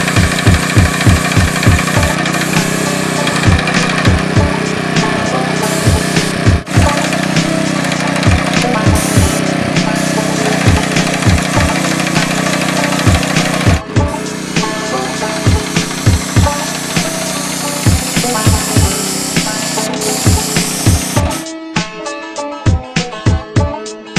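Paint sprayer running: a steady hiss from the hose-fed spray gun with the pump's low hum, cutting off near the end. Music with a steady beat, about two beats a second, plays throughout.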